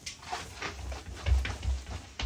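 Footsteps on water-damaged laminate wood flooring with water trapped underneath, the loose planks giving a few soft thumps and faint clicks underfoot.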